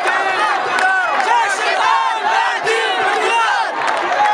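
A crowd of men and boys shouting together, many raised voices overlapping without a break.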